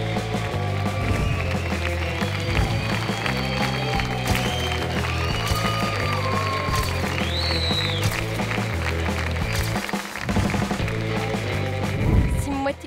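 Music with a steady beat and a pulsing bass line that changes note every half-second or so, with sustained higher notes over it.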